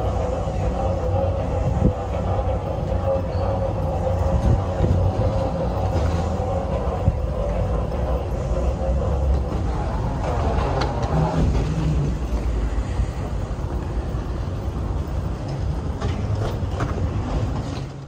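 Steady low rumble and hum of a busy airport terminal corridor, with faint voices.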